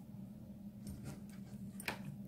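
Faint clicks and rustles of fingers handling wool yarn at the edge of the crochet fabric, a few about halfway through and one sharp click near the end, over a steady low hum.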